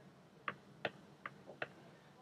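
Faint, irregular clicks of a stylus tapping on a pen tablet while handwriting, five in about a second and a half.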